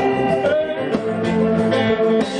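Live band music: a male singer singing into a microphone over keyboards and other instruments.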